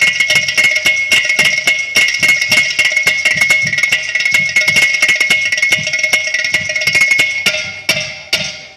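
Percussion ensemble of hand drums and a clay-pot drum (ghatam) playing a fast, dense rhythm over a steady high ringing tone. Near the end the strokes thin out to a few spaced final hits as the piece winds down.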